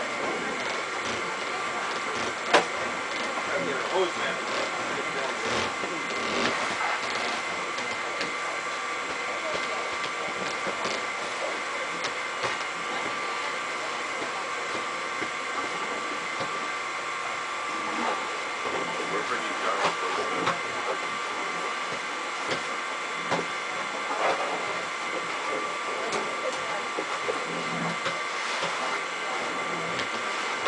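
A motor runs steadily with a whine of several held tones, under the knocks and clatter of work at a grape press, including a sharp click about two and a half seconds in.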